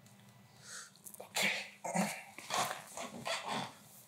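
A dog barking several times in short bursts over about three seconds.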